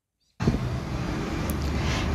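Outdoor background noise: a steady low rumble with hiss that cuts in suddenly about half a second in.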